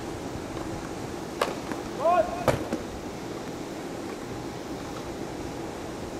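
Tennis ball struck by rackets: two sharp hits about a second apart, with a short high-pitched vocal cry just before the second, over a steady outdoor background hiss.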